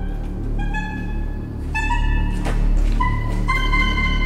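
Soprillo, the smallest saxophone, playing a string of short, high held notes that climb in steps about a second apart. Under them runs a low, droning horror-film music score.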